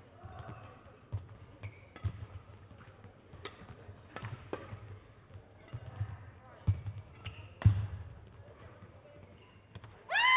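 Badminton rally: a series of sharp racket strikes on the shuttlecock, roughly one a second, with the dull thuds of players' footfalls and lunges on the court mat, echoing in a large hall. The loudest strike comes about three-quarters of the way through.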